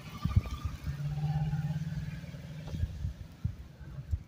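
A steady low motor-vehicle engine hum lasting about a second and a half, from about a second in. Underneath are irregular low bumps and rustle from a phone being carried while walking.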